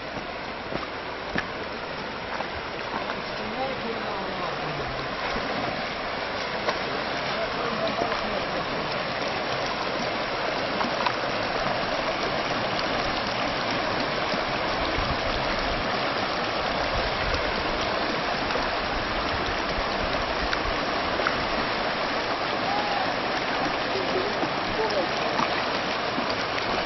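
Shallow rocky river rushing and splashing over stones, a steady dense rush of water that grows louder over the first several seconds and then holds.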